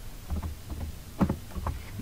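Computer keyboard typing, with a few faint keystroke clicks a little past the middle, over a low steady hum.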